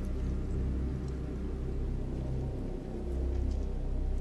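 Low, rumbling drone of a dark film score, sustained, with a short dip in loudness about three seconds in.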